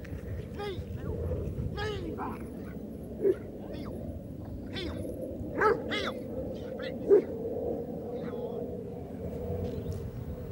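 Rottweiler police dog barking, a series of separate sharp barks, as it holds a man at bay after being sent to detain him.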